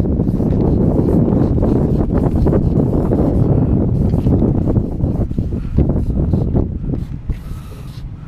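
Low, gusty wind noise buffeting the microphone, loud, easing off near the end.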